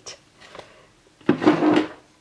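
A short rubbing scrape about one and a half seconds in, the handling noise of skeins of yarn being lowered and put down.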